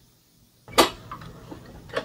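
A single sharp clack about a second in, as the tilt head of a Hamilton Beach stand mixer is lowered back down onto its stainless steel bowl.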